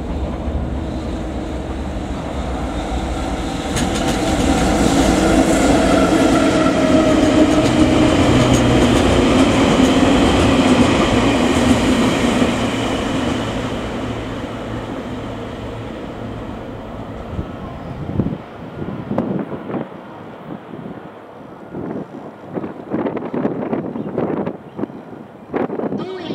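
A freight train, EF65 electric locomotive hauling an M250 Super Rail Cargo set, passing through a station: a loud rumble with steady humming tones that swells to a peak and then fades. In the last several seconds, as the final cars go by, the wheels click over the rail joints.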